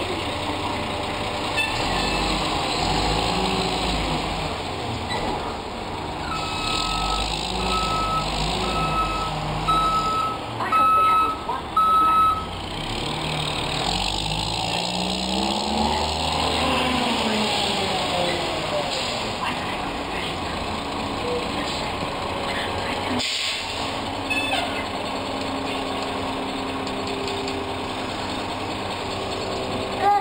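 Side-loading garbage truck's diesel engine running, with its reversing beeper sounding a run of about eight evenly spaced beeps near the middle. The engine note then rises and falls as the truck pulls away.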